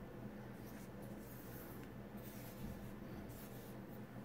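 Small wooden letter tiles being slid and shuffled across a wooden tabletop by hand: a few faint, short scraping strokes at irregular moments, over a low steady hum.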